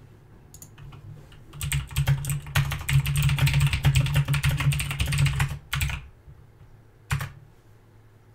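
Typing on a computer keyboard: a fast run of key clicks lasting about four seconds, starting about a second and a half in, then one more single click near the end.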